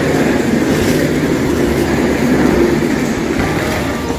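Railway station hall ambience: a steady, loud rumbling wash of noise with no single clear event.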